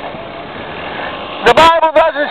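Steady traffic noise from the street during a pause in the preaching, then a man's loud preaching voice comes back in about a second and a half in.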